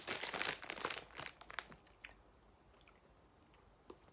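A person chewing a gelatin gummy candy close to the microphone, a run of small mouth clicks and smacks over the first couple of seconds.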